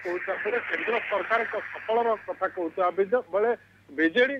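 Speech only: a man reporting in Odia over a telephone line, his voice thin and radio-like, with hiss under it for the first two seconds.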